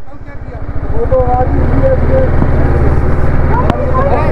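TVS Apache RR310's single-cylinder engine idling close by, a steady low pulsing that gets louder about a second in. Voices are heard in the background.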